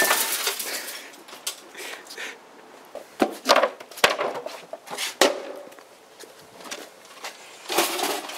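Stereo speaker cabinets and an amplifier being smashed: several separate hard blows with cracking of wood and plastic, the loudest at the very start.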